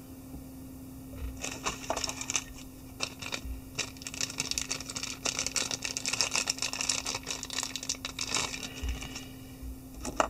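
A dense run of small scratches, clicks and rattles from fly-tying materials being handled at the bench, starting about a second in and stopping near the end, over a steady low hum.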